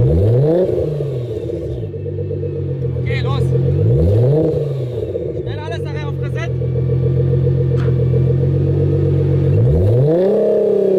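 Nissan GT-R's twin-turbo V6 running steadily while the car waits to launch. It is revved up and back down near the start and again about four seconds in, then revs rise sharply right at the end as the launch begins.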